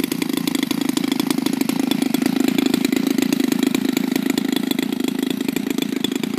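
A small engine running steadily at a constant speed, a fast even stream of firing pulses.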